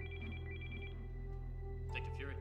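A telephone ringing with a rapid electronic trill that warbles between two pitches, one short burst of under a second near the start, over soft background music.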